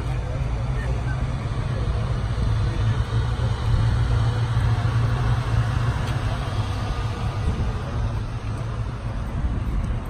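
A vehicle engine idling nearby, a steady low rumble, with people talking in the background.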